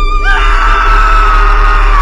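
A person screaming in mock horror, starting about a quarter second in, held for about two seconds and falling in pitch at the end, over background music.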